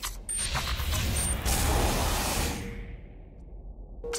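Sound effects of an animated intro: mechanical clicks and whooshing over a deep rumble. It fades in the second half, and another hit comes at the very end.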